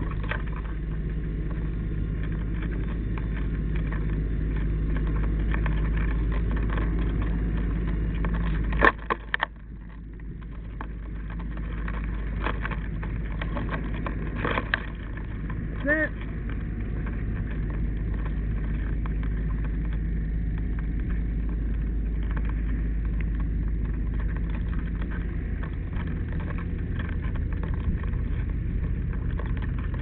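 A fire truck's engine runs steadily throughout. Just before nine seconds in it dips briefly, with a few sharp knocks, and a short pitched sound comes about sixteen seconds in.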